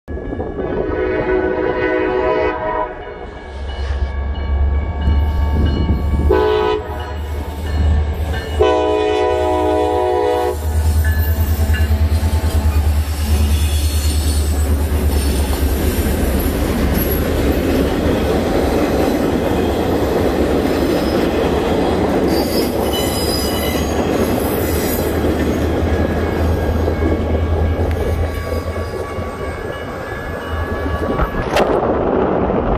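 Diesel freight locomotive horn sounding three blasts at a grade crossing: a long one, a short one, then another long one. A steady low rumble of the passing locomotives' engines and the train's wheels on the rails follows.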